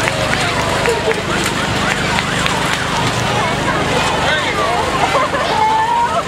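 Outdoor crowd of parade spectators talking and calling out over one another, with a steady low hum underneath.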